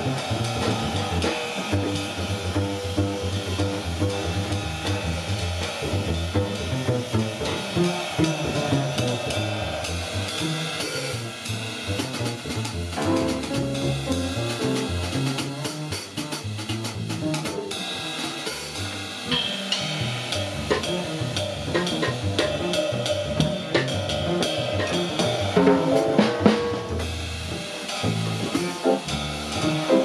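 Jazz trio music with a busy drum kit to the fore, snare and cymbal strokes throughout, over a plucked upright bass line.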